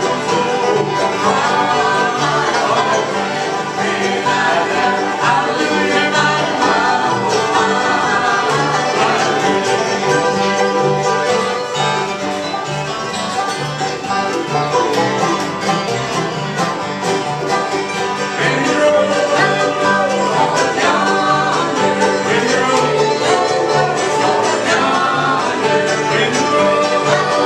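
Live bluegrass band playing an instrumental passage: five-string banjo rolls over strummed acoustic guitars and mandolin, with upright bass keeping an even beat.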